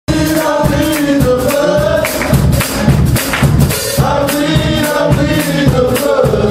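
Live gospel singing: a vocal group holding notes in harmony over a band with drums and steady percussion.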